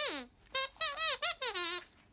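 A puppet dog's squeaker voice answering in a string of high-pitched, warbling squeaks: one short falling squeak, a brief pause, then several quick squeaks in a row.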